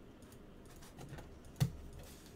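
Light clicking of computer keyboard keys being typed, with a louder knock about one and a half seconds in.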